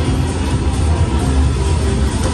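Buffalo Triple Power video slot machine playing its electronic music and sound effects as the reels spin, over a steady low rumble.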